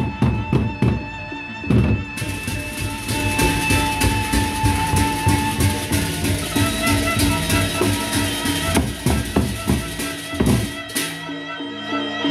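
Gendang beleq ensemble: large double-headed barrel drums beaten with a mallet and the hand in a fast, dense rhythm over a held melodic line. From about two seconds in until near the end, clashing hand cymbals join in.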